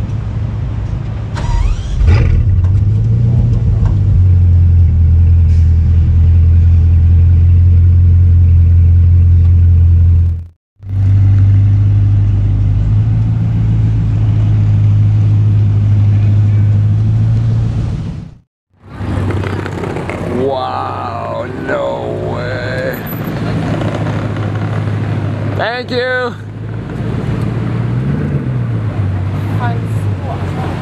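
Bugatti Chiron's quad-turbocharged W16 engine started cold: a brief rising whine, then it catches about two seconds in and settles into a loud, steady fast idle. The sound cuts off and the engine returns still running steadily. Later it gives way to quieter street sound with voices.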